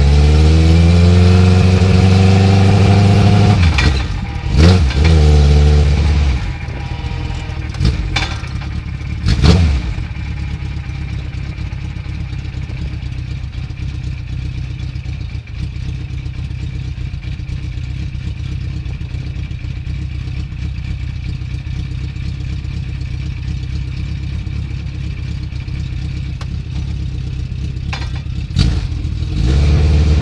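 A race car's engine heard from inside the cockpit. It pulls in low gear with rising revs and is blipped several times in the first ten seconds, then idles steadily for most of the time before revving up again near the end.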